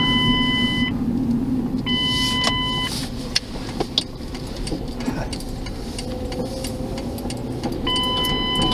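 Car interior while driving: a steady engine and road-noise rumble. An electronic beep, each about a second long, sounds twice in the first three seconds and once more at the very end.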